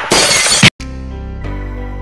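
A loud crashing, shattering sound effect lasting under a second that cuts off sharply, followed by background music with sustained chords.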